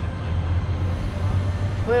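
Steady low rumble of city traffic noise, a constant hum with no single event standing out.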